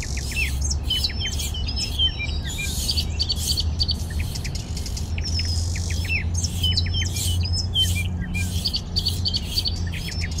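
Many small birds chirping, with quick downward-sliding notes, over a steady low hum and short repeated bursts of high hiss.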